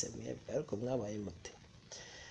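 A voice speaking briefly for about the first second and a half, then fading to faint room tone.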